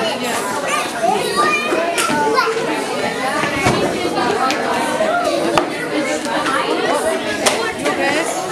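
Many children talking and calling out at play, their voices overlapping continuously, with a few short sharp knocks.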